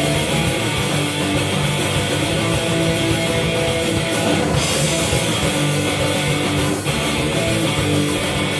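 Punk rock band playing live: distorted electric guitars and drums in a dense, steady instrumental passage with no vocals.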